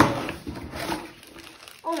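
A taped cardboard box being torn open: a sharp rip at the start, then about a second of cardboard and packing rustling and scraping as the flap is pulled back.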